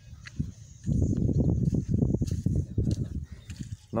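Irregular low rumbling on the microphone of a handheld phone carried outdoors while walking. It starts about a second in and lasts about three seconds.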